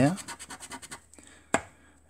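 Silver metal bar scratching the coating off a scratchcard in a run of rapid short strokes, followed by a single sharp click about one and a half seconds in.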